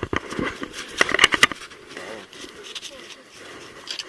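Fishing reel being cranked while a steelhead is being played, close to the microphone. A quick run of clicks and knocks comes through the first second and a half, loudest a little after one second, followed by softer reel and handling noise.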